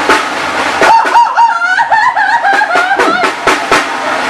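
Live banda music: a high melodic line that scoops up and down over and over, with a cackling quality, runs from about a second in to near the end over sharp percussion hits.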